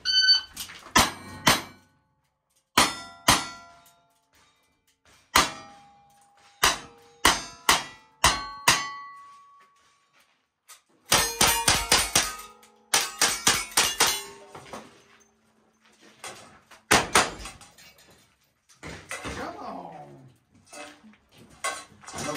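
A string of gunshots at steel targets, about one every half second to a second, with several shots followed by the brief ring of struck steel plates. A short pause about ten seconds in, then a quicker run of shots.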